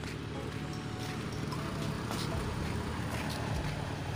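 Footsteps on a concrete path, a sharp slap about once a second, over a steady low rumble.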